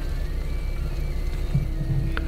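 Forklift engine running steadily, heard from inside the cab, under quiet background music.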